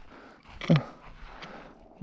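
A single short vocal sound from a person, gliding quickly down in pitch about two-thirds of a second in, over faint background.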